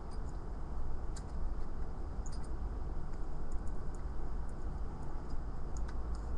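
A few faint, scattered clicks of a key turning in a turtle-shaped Chinese puzzle lock, heard over a steady low background rumble that is louder than the clicks.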